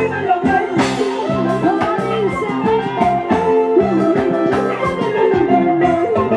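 Live Andean carnaval band music over a PA: a gliding melody line over guitar and a steady drum beat.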